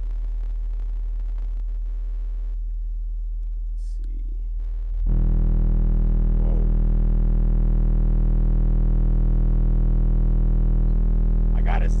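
Kicker CompC 12-inch subwoofer (44CWCD124) in a sealed box, playing a steady deep bass test tone inside a car's cabin. About five seconds in the volume is turned up and the tone jumps much louder, with a buzzy edge of higher overtones; up close it is described as hammering.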